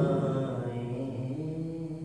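A man singing unaccompanied in Urdu, drawing out one long note that shifts in pitch about halfway through and fades toward the end.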